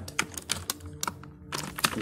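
Computer keyboard typing: a quick, irregular run of key clicks with a short pause a little past halfway.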